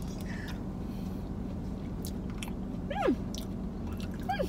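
A person chewing a spoonful of food, with a few soft mouth clicks, then a hummed 'hmm' of approval near the end.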